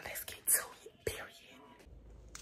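A woman's short, breathy, half-whispered speech fragments, fading into quiet room tone near the end.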